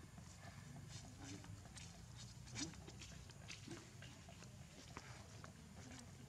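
Faint scattered clicks and rustles from a group of macaques grooming one another, with a short low call about two and a half seconds in, the loudest moment, and another about a second later.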